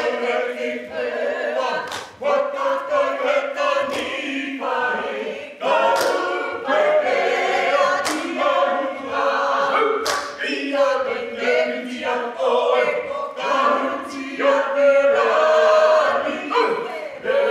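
A group of Māori performers, men and women, singing a waiata together in unison. Sharp claps mark the beat about every two seconds.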